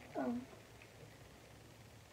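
A short spoken "oh" that falls in pitch, then a faint steady low hum from the toy mini washing machine running.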